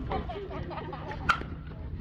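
Metal baseball bat striking a pitched ball once, a sharp ping with a brief ring a little over a second in, over faint crowd chatter.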